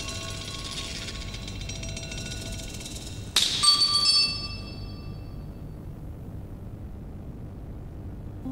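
Sparse bell-like chime tones in a film score: faint ringing notes fade out, then a louder struck chord-like chime about three and a half seconds in rings out and dies away within about a second, over a faint steady hiss.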